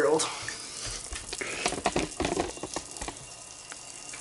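Foam pool-noodle water blaster being worked with a bucket of water: a crackly hissing of water with scattered short knocks and clicks.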